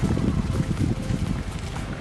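Wind buffeting the camera microphone, a low, irregular rumble.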